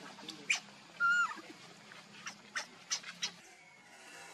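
Baby macaque giving one short, high-pitched cry about a second in, with several quick sharp squeaks before and after it.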